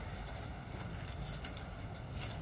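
Quiet room tone in a meeting chamber with a few faint, light taps.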